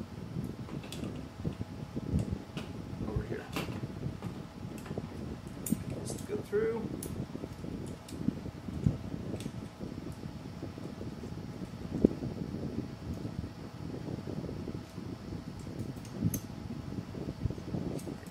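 Aluminium extrusions and small metal hardware handled on a workbench: scattered light clicks and knocks of metal parts, with one sharper knock about twelve seconds in, over a faint steady hum.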